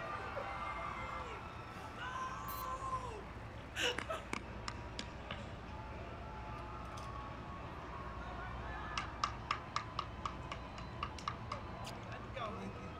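Faint voices and a little laughter in the first few seconds, then about three seconds of quick, evenly spaced hand claps, four to five a second, near the end.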